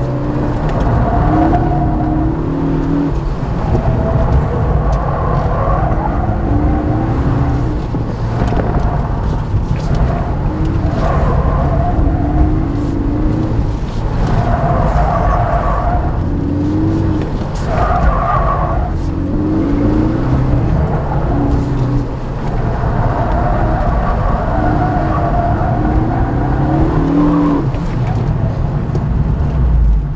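2013 Ford Focus ST's turbocharged 2.0-litre four-cylinder heard from inside the cabin, driven hard and rising and falling in pitch many times, with tyres squealing in repeated bursts.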